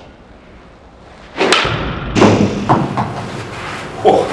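TaylorMade M1 2017 driver striking a golf ball about one and a half seconds in: a sharp impact, followed at once by a thud as the ball hits the simulator screen, then a few lighter knocks.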